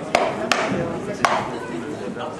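Three sharp knocks at uneven intervals, over faint voices and chatter from people at the ground.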